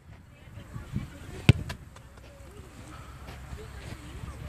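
A football kicked on an artificial-turf pitch: one sharp thud about one and a half seconds in, with a couple of softer knocks around it and faint distant voices.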